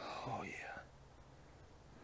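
A man whispering "Oh, yeah" in the first second, then near silence.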